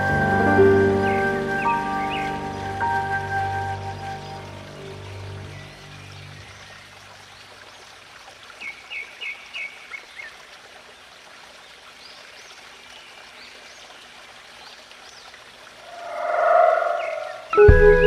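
A flute-led instrumental fades out over the first few seconds, leaving steady running water. About nine seconds in, a bird gives a quick run of five or six chirps. Near the end a short rising swell leads into the next track, with sustained tones and plucked notes.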